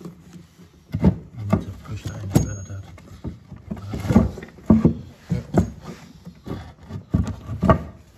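Irregular knocks, clicks and scrapes, about two a second, from hands working push-fit plastic pipework, a ball valve and timber boards under an opened floor; the loudest knocks come a little after halfway.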